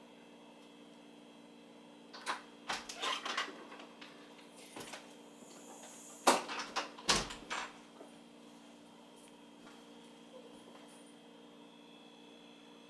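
An interior door being handled, opened and shut: a run of clicks and knocks a couple of seconds in, a single click near the middle, then heavier knocks with a dull thud about seven seconds in.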